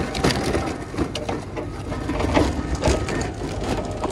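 Loaded metal store cart rolling over rough, gritty concrete, its wheels and frame rattling in a continuous irregular clatter.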